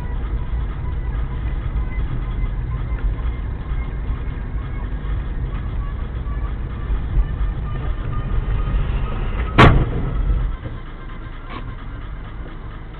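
Low, steady road and engine rumble inside a moving car, then a single loud, sharp bang a little over nine seconds in, a crash impact. After it the rumble is quieter.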